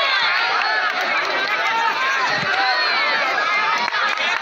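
Large crowd of many voices talking and shouting over one another, a dense, steady hubbub.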